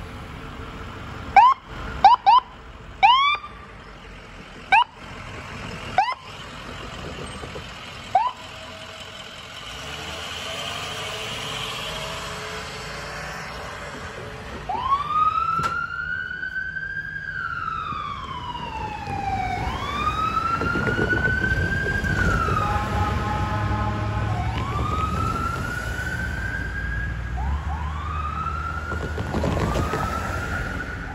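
Ambulance siren: a run of short, loud rising chirps over the first several seconds, then a slow wail that rises and falls, with a steady tone for a second or two midway and quicker yelps near the end. A low vehicle engine rumble runs under the later part.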